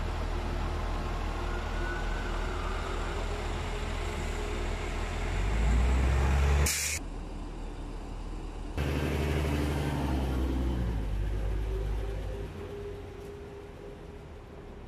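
A bus engine runs with a low rumble that swells about five to six seconds in. A short sharp air-brake hiss comes just before seven seconds in, and then the rumble carries on and fades near the end.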